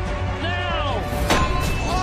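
Music playing over stage action, with cries sliding down in pitch early on and one sharp thud about a second and a quarter in.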